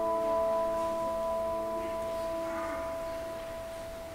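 A bell rings on after a single strike just before, its several steady tones slowly fading.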